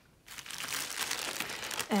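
Clear plastic ziplock bag of small paint pots crinkling as it is handled, starting about a third of a second in.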